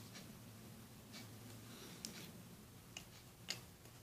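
Faint handling of a hollow plastic dinosaur toy in the fingers: a few light plastic clicks and rubs, irregularly spaced, over a low room hum.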